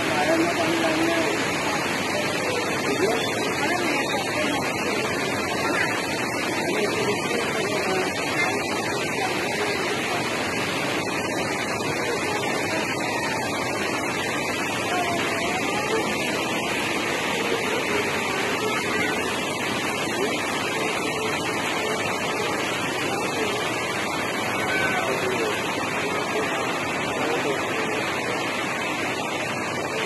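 Steady rush of water, even and unbroken, with faint voices behind it.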